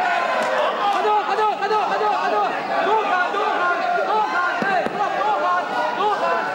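Several people talking over one another: crowd chatter.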